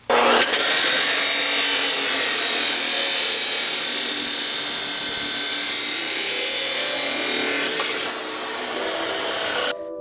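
DeWalt abrasive chop saw cutting through steel tube: a loud, steady, high-pitched grinding for about eight seconds, then dropping to a quieter hum near the end. The abrasive wheel cuts slowly, about three times slower than a dry-cut saw.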